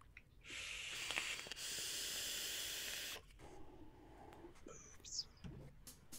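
A long drag on a vape: air hissing steadily through the atomizer for nearly three seconds, followed by a softer, lower breath out.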